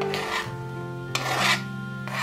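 Spatula scraping diced apple pieces across a cutting board into a frying pan, two rasping scrapes, the second longer and louder, over steady background music.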